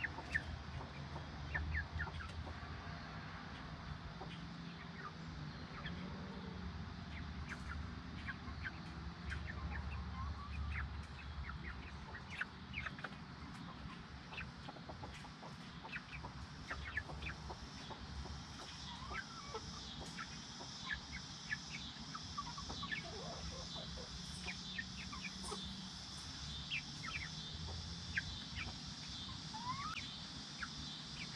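Silkie chicks peeping: many short, high chirps that slide down in pitch, scattered all through.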